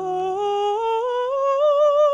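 A woman singing a slow phrase that climbs step by step, with vibrato, accompanied by violin and piano. A low piano chord dies away soon after the start.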